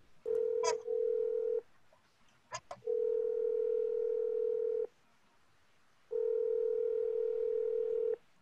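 Telephone ringback tone: the line ringing unanswered, three long steady tones with short silent gaps between them.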